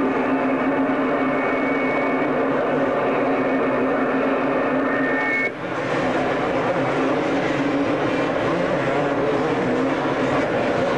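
Several two-stroke motocross bikes racing on a supercross track, their engines blending into a dense, steady drone. The sound drops briefly about halfway through.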